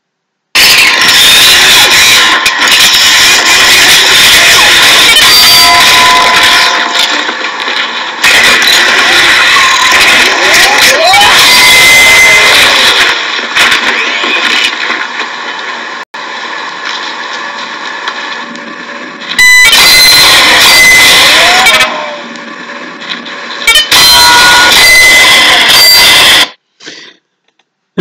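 Soundtrack of a video played loudly through a phone's speaker into the microphone: a dense, harsh, distorted noise with a few thin whistling tones and brief gliding sounds. It dips twice and cuts off shortly before the end.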